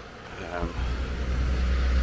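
A van passing close by on the road, its low rumble building over the last second and a half.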